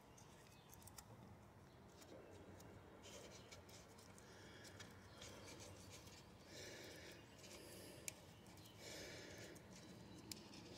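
Very faint soft brushing in a few short strokes as a small brush daubs lithium grease onto a master cylinder pushrod clevis and pivot pin, with a light tick near eight seconds.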